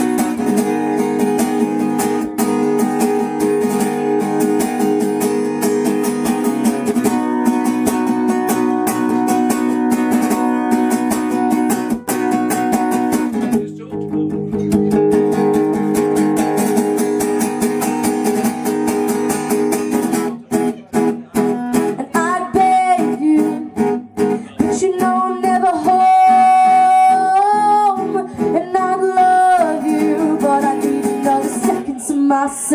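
Acoustic guitar strummed steadily, with a short break about halfway. A young woman's singing voice comes in over the guitar about two-thirds of the way in.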